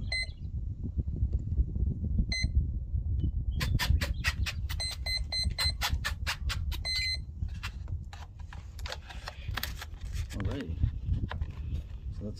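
Spektrum DX6e radio transmitter giving short high electronic beeps while it is set to bind to the jet's receiver: a single beep at the start, another about two seconds in, then a quick run of beeps and clicks from about four to seven seconds. Wind rumbles on the microphone throughout.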